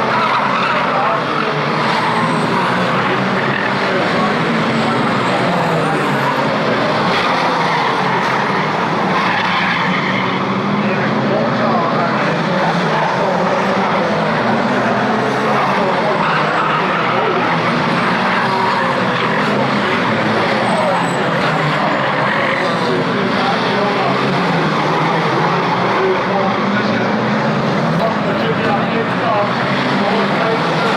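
A pack of National Saloon Stock Cars racing, several engines running and revving together with tyres skidding through the bends. The sound stays steady and loud throughout.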